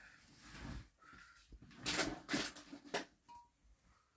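Handling noise from a handheld camera moved close over a porcelain toilet bowl: soft rubbing and shuffling, then a quick cluster of knocks and clatter about two to three seconds in.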